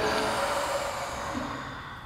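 A long, slow group exhale, breath rushing out and fading away over about a second and a half.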